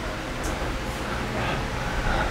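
Steady room noise with a faint voice in the background in the second half.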